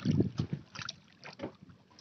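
Irregular low knocks and scuffs on a small wooden fishing boat as a handline is hauled in hand over hand over the gunwale.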